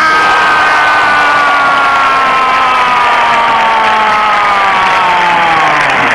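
A football radio commentator's long, drawn-out goal cry: one held note, slowly falling in pitch, breaking off near the end. A stadium crowd cheers underneath.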